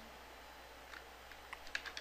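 Faint keystrokes on a computer keyboard: a few light, scattered taps while a word is typed, most of them in the second half.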